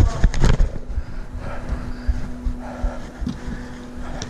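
A chest-mounted camera jostled by a player running on artificial turf: irregular low thumps of footsteps and body movement on the microphone, with a few sharper knocks in the first half second. A steady low hum runs underneath.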